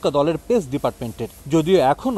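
Speech only: a news narrator talking continuously in Bengali.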